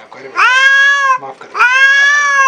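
Black cat yowling angrily at an unfamiliar cat: two long, high calls less than half a second apart, each rising in pitch at the start and then held.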